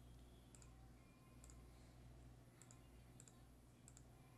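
Near silence with a few faint computer mouse clicks, some in quick pairs like double clicks, over a low steady hum.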